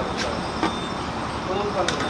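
Fresh milk pouring from a steel vessel into a stainless steel measuring jug, a steady rushing pour with a few light metal clinks, over a low steady hum and faint voices.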